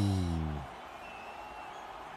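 A man's drawn-out "ooh" of commentary, falling in pitch and dying away about half a second in, then only a low, steady background hiss.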